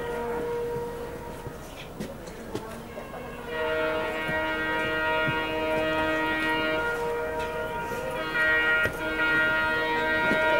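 WDP-4D diesel locomotive's horn sounding a long blast of several tones at once, starting about three and a half seconds in, with a second blast beginning near the end. Before it, only the quieter running noise of the moving train.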